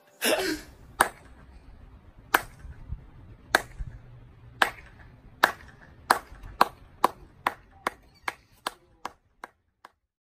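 One person's slow clap: sharp single hand claps, more than a second apart at first, speeding up to about two or three a second and growing fainter toward the end. A brief burst of noise comes just before the first clap.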